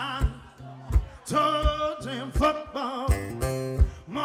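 Live acoustic duo: men singing over strummed acoustic guitars, with a low thud on each beat about every 0.7 s.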